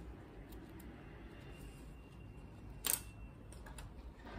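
Quiet handling of small painting tools on a table, with one sharp click about three seconds in and a few faint ticks.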